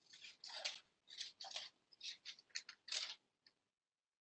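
Scissors cutting through a magazine page in a run of about seven short, faint snips.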